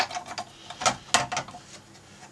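Several light, sharp clicks and taps, irregularly spaced, as the top circuit board of a 1984–89 Corvette digital instrument cluster is handled and set down onto its plastic housing and pins.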